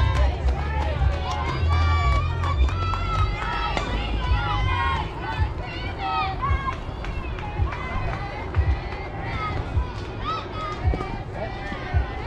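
Several girls' voices shouting and calling out over one another, with a low rumble underneath and a few sharp claps or knocks in the second half.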